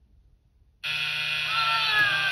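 Game-show wrong-answer buzzer: a harsh, steady blare that cuts in suddenly about a second in and keeps sounding. It signals that none of the new digits is correct, so the game is lost.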